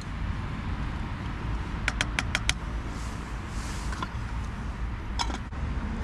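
Steady low rumble of road traffic, with a quick run of four sharp clicks about two seconds in and a couple more clicks near the end.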